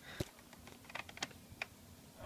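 A handful of faint, short handling clicks and taps as a Nerf toy dart blaster is moved about close to the phone camera.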